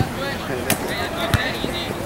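Field ambience of a soccer match: distant players' voices over a steady outdoor background, broken by two sharp knocks about two thirds of a second apart.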